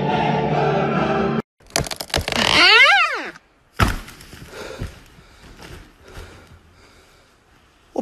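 Choral music that cuts off abruptly about a second and a half in, followed by a loud creaking sound that rises and then falls in pitch, and a single sharp crack a second later, then faint scattered noises.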